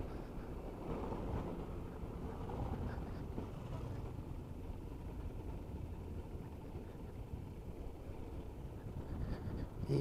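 Honda NC 750X parallel-twin motorcycle riding along a cobblestone road: a steady low rumble of engine, tyres and wind.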